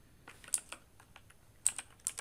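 Computer keyboard keys clicking: a few scattered keystrokes, then a quick run of clicks near the end as letters are typed.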